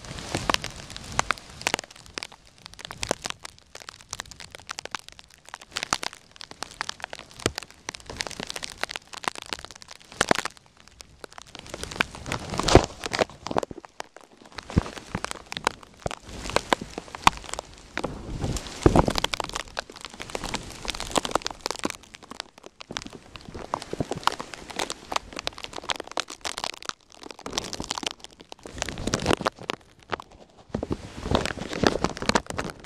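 Plastic bag wrapped over a camcorder, crinkling and crackling against the microphone in dense, irregular bursts as wind and handling work it. It covers other sound, with a few louder crackles about a third and two-thirds of the way through.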